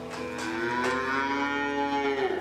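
Black-and-white dairy cattle in a barn: one long moo that starts a moment in, rises slightly in pitch and then holds.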